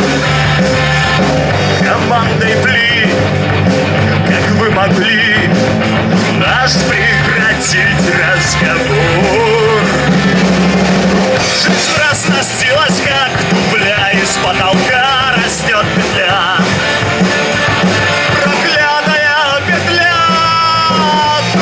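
Live rock band playing: a male singer singing into a handheld microphone over electric guitar, bass guitar and a drum kit.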